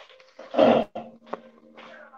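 A single short, loud animal call about half a second in, followed by faint scattered sounds and a steady low tone.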